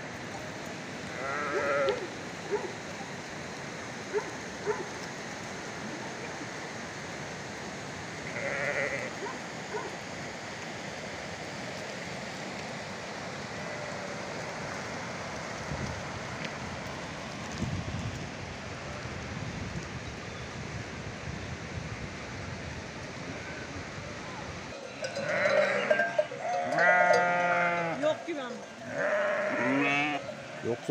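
Sheep bleating over a steady rush of flowing river water: a couple of single bleats early on, then many sheep bleating together near the end as the flock crowds close.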